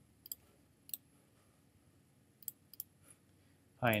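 Computer mouse button clicks, a few sharp single clicks spaced out over a quiet background, with two close together about two and a half seconds in.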